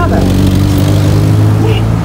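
A road vehicle's engine running close by as a steady low hum, loudest towards the middle and easing off near the end.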